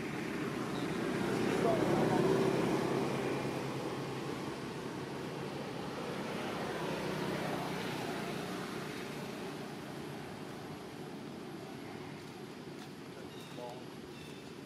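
Steady low outdoor rumble, like distant traffic, swelling to its loudest about two seconds in and again more gently around seven seconds.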